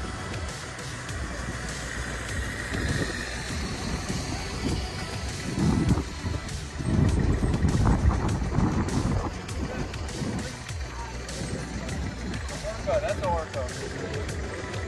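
Wind rumbling on the microphone while riding a bicycle along a city street, loudest about six to nine seconds in.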